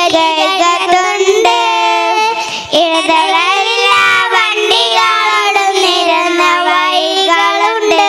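A small group of young girls singing a song together into handheld microphones, amplified, with held notes and a short break between phrases a little over two seconds in.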